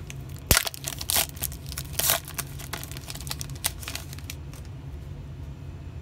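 A shiny plastic trading-card pack wrapper being torn open and crinkled by hand: a run of sharp rips and crackles, loudest about half a second in, dying away after about four seconds.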